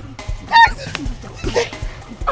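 A woman's short, shrill, high-pitched cry about half a second in, followed by weaker strained vocal sounds, as two people grapple. Underneath runs a background music track with a regular low drum beat.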